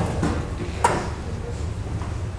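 A low steady hum with a single sharp click about a second in.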